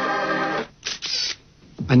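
Background music with steady held chords that stops just over half a second in. A short noisy burst follows, then a brief quiet gap before a man's narrating voice begins at the very end.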